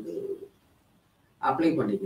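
A man speaking Tamil in two short phrases with a silence of about a second between. The first phrase ends in a drawn-out low vowel.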